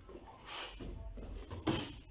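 Kickboxing movement on a training mat: a short hiss about half a second in, then a short, sharp sound near the end as a kick is thrown at a partner.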